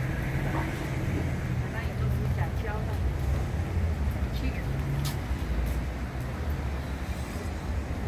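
City street ambience: a steady low rumble of road traffic, with passersby talking faintly. A single sharp click about five seconds in.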